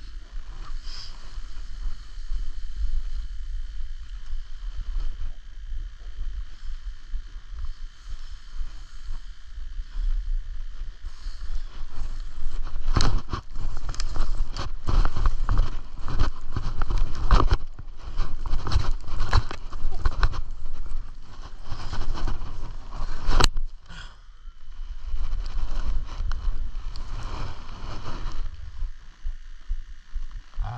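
Skis hissing softly over snow at first, then a dense run of loud scraping strokes as they carve quick turns over packed, tracked snow, with a single sharp click partway through. Wind rumbles on the body-worn camera's microphone throughout.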